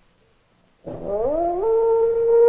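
An eerie, howling animal cry: after about a second of near silence it starts suddenly, climbs in pitch in a few steps, then holds a long note.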